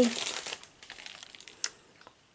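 Plastic food wrapper crinkling as it is handled, loudest in the first half second, then a few light clicks and one sharper tick about one and a half seconds in.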